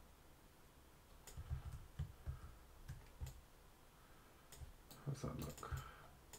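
Computer mouse and keyboard clicks, single clicks spaced a second or so apart, then a quick run of clicks near the end.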